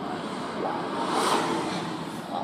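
Steady road and engine noise inside the cabin of a moving car, with faint sung 'la la la' near the end.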